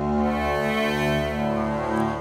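Arturia Pigments 4 software synthesizer playing a cello-like 'Corrosive Strings' patch, built from a bowed-acoustic sample run through granular and comb filtering. It holds one sustained, steady string-like note with a slight vibrato waver.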